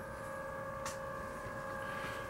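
A faint, steady hum on one held pitch, with a single short click a little under a second in.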